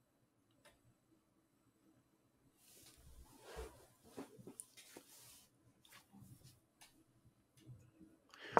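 Near silence: room tone, with faint rustling and a few soft clicks in the middle.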